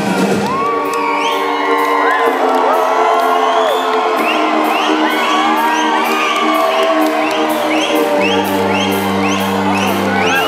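Live rock band in a stripped-back passage: steady held chords over a regular ticking beat, with the crowd whooping and cheering over it. A low bass note comes back in about eight seconds in.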